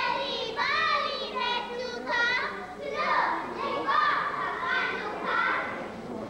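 Children's high-pitched voices in short phrases with brief gaps, too unclear to make out as words.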